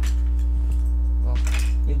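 Small hard plastic camera accessories being set down and shifted on a desk, clicking and clattering at the start and again about a second and a half in. A steady low electrical hum runs underneath.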